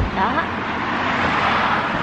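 Steady road traffic noise from passing cars, an even rush without breaks.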